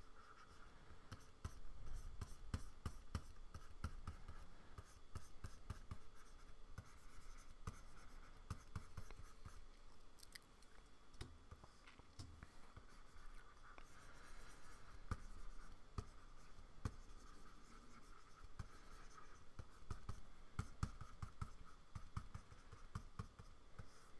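Stylus nib tapping and stroking on the surface of a Wacom Cintiq pen display: a quiet, irregular run of small ticks and scratchy strokes.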